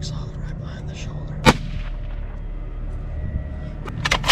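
A scoped hunting rifle fired once about a second and a half in: a single sharp crack with a short fading tail, over a steady low rumble.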